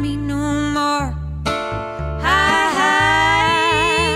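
A woman singing a slow old-time country song over strummed acoustic guitar and upright bass. In the second half she holds a long note with vibrato.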